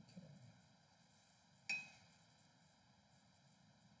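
Near silence: faint room tone, broken about a second and a half in by one sharp click that rings briefly.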